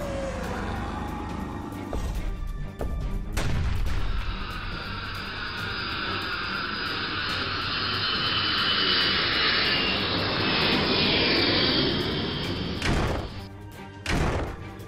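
Cartoon energy-beam sound effect for Godzilla's atomic breath: a loud, dense rushing noise with sweeping tones through it that starts suddenly a few seconds in, holds for about ten seconds and cuts off near the end, followed by a sharp hit, over music.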